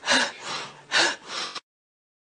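Four sharp, breathy puffs and gasps from a person, a few tenths of a second apart, with hardly any voice in them. About one and a half seconds in they cut off abruptly into dead silence.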